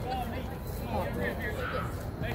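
Indistinct chatter of several people's voices around the field, over a steady low background hum.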